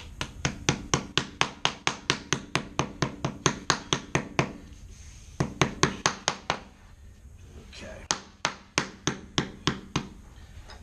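White rubber mallet tapping a rubber T-molding down into its nailed-down track at the carpet-to-vinyl-plank edge, in quick runs of about four or five strikes a second. There is a short break about halfway, a longer one a little later, and a last run near the end. The strikes press down the hump left in the centre of the molding to seat it tight in the track.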